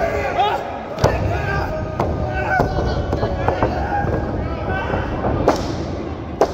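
Sharp slaps and thuds from a wrestling ring, about five of them, the loudest about a second in and near the end, over shouting voices of a small crowd in a large hall.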